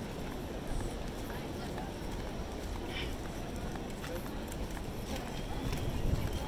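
Outdoor crowd on a wooden pier: a steady babble of many people talking, with scattered footsteps knocking on the boardwalk planks.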